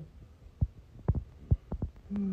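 A handful of short, low thumps and knocks, about six in under two seconds with quiet between them, typical of a phone being handled close to its microphone.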